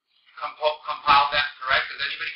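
A man's voice reciting a quick run of short pitched syllables that starts a moment in, without the breaks of ordinary English speech.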